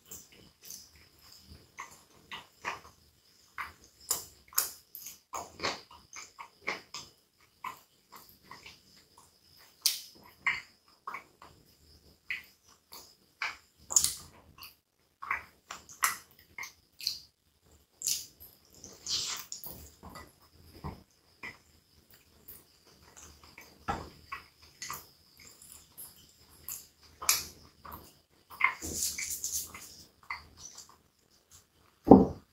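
Close-miked chewing and mouth sounds of someone eating a hot dog in a soft bun: a continuous run of short wet smacks and clicks, with a denser stretch of noise near the end.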